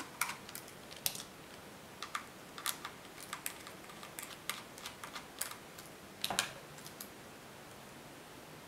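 Irregular small clicks and ticks of a precision screwdriver working the screws out of a laptop hard drive's metal retaining bracket, with a slightly louder cluster of clicks about six seconds in.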